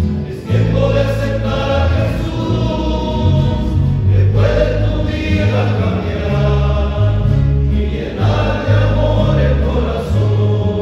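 Men's choir singing a hymn together, over a strong low bass line. New phrases begin about every four seconds.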